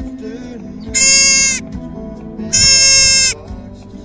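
Cow elk calling twice: two loud, high-pitched mews, each under a second long and about a second apart, which the uploader takes for a mother looking for her calf. Guitar music plays quietly underneath.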